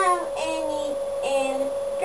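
A high, childlike voice singing a few long held notes that step down in pitch, over a steady faint hum.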